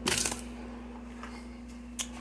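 Plastic lid pressed onto a blender jar with a short clattering rattle, then a single sharp click near the end as the jar is handled. A faint steady hum runs underneath.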